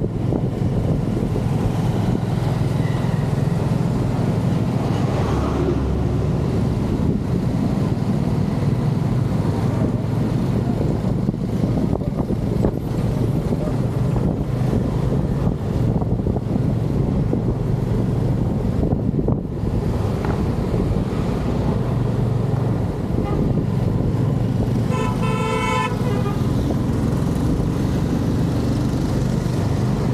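Motorcycle running steadily on the move, with road and wind noise. A vehicle horn beeps in a short pulsed burst about 25 seconds in.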